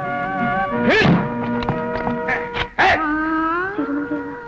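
Synthesized background film score of held notes, punctuated by two loud sharp accents about one second and three seconds in, with a note sliding upward near the end.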